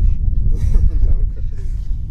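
Strong wind buffeting the camera microphone, a steady low rumble, with faint voices under it.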